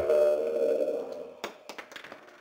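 A dramatic sting: a held tone with a hiss over it that fades out over about a second and a half, then a few sharp clicks.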